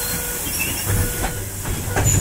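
Loud, steady hiss of compressed air from a trolleybus's pneumatic system, with low thuds about a second in and near the end.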